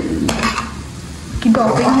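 Slotted metal spatula stirring and scraping sweet corn kernels around a non-stick wok, with a few sharp scrapes against the pan over a light sizzle of frying.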